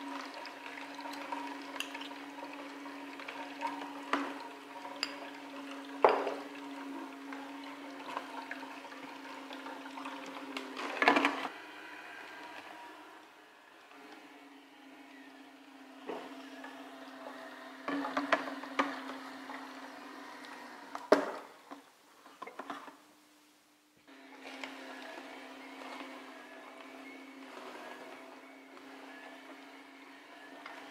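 Vertical slow juicer running with a steady low hum as soaked aronia berries are spooned into its feed chute. Scattered knocks and clinks come from the spoon striking the bowl and the chute. The motor hum briefly cuts out about two-thirds of the way through, then starts again.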